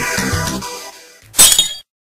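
Electronic music winding down with a falling sweep and fading out, then a loud glass-shattering sound effect about a second and a half in that cuts off abruptly.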